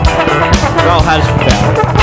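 A funk band playing with drum kit and electric bass under saxophone and trombone, with sliding pitch lines over a steady beat.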